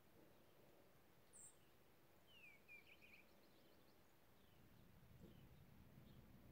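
Near silence with a few faint bird chirps: a single high chirp about a second and a half in, then a quick run of chirps a second later.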